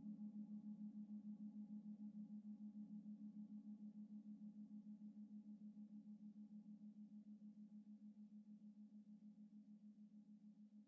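Faint, low sustained tone with a fast, even pulsing wobble, slowly fading: a drone in soft meditation music.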